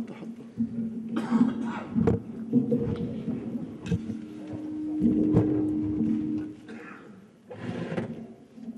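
Knocks and bumps of podium microphones being handled, with brief murmured voices, and a steady tone held for a couple of seconds midway.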